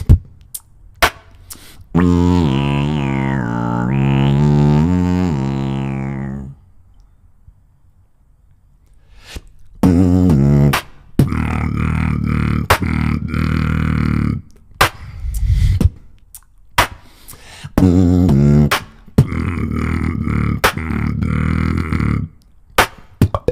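Solo beatboxing close into a handheld microphone: sharp percussive clicks at first, then about two seconds in a long low bass note with a higher tone sliding down and up over it. After a pause of a few seconds come low vocal bass notes cut through with sharp kick and snare hits.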